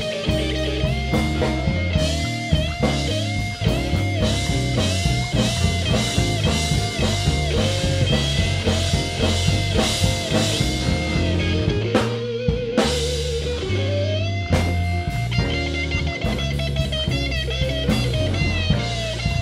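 Live electric blues band playing an instrumental passage: an electric guitar lead with bent, wavering notes over electric bass and a drum kit.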